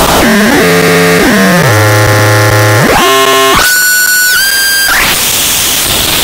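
Software modular synthesizer patch, an Instruo Cš-L dual oscillator cross-patched with a Plaits macro oscillator, producing harsh, noisy buzzing tones that step and glide in pitch. A low tone slides down and holds, then jumps up to a high tone about three and a half seconds in, and breaks into a burst of noise near the end.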